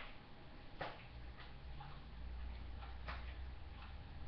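A few faint, irregularly spaced clicks over a low, steady room hum.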